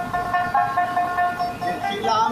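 A man singing a Bengali Baul folk song, holding long steady notes that step to a new pitch a few times.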